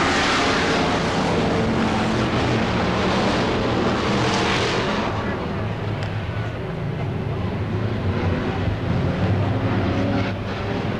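Several V8 dirt-track Sportsman stock cars racing at full throttle, the pack passing close, loudest near the start and again about four seconds in, then a steadier engine drone.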